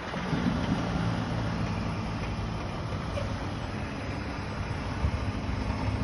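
Car-carrier truck's diesel engine running steadily: a low drone over outdoor noise.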